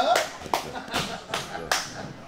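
Boxing gloves punching a heavy bag: four sharp slaps in quick succession, a little under half a second apart.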